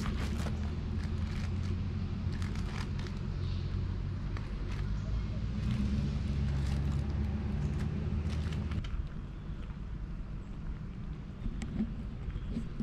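A motor, most like a vehicle engine, idling with a steady low hum that cuts off about nine seconds in. Light clinks from the cast iron Dutch oven's lid and lifter being handled come mostly in the first few seconds.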